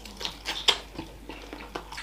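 Close-up mouth sounds of eating chicken feet: a scatter of short smacks and clicks from sucking and chewing on the small bones.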